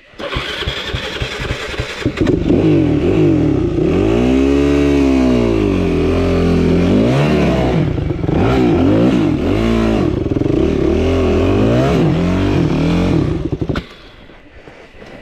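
Yamaha WR250F 250 cc single-cylinder four-stroke dirt bike engine coming to life at the start, then revved up and down repeatedly with a wide swoop of rising and falling pitch. It falls away sharply near the end.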